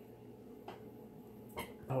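Quiet kitchen room tone with a faint steady hum. A faint click comes a little past halfway and a sharper knock near the end as the filming phone is handled, and a drawn-out groan of dismay, "Oh", begins at the very end.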